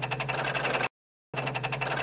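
Typing or teletype sound effect: rapid mechanical clicking over a low hum. It comes in two bursts of about a second each, with a short silence between.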